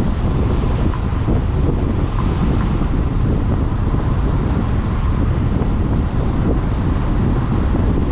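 Steady wind noise buffeting the microphone of a camera riding in a moving car, over the rumble of the car travelling on the road. It runs evenly and cuts off suddenly just after the end.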